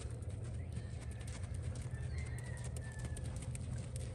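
Faint hoofbeats of a Tennessee Walking Horse gaiting on a sand arena, over a low steady rumble, with faint bird calls.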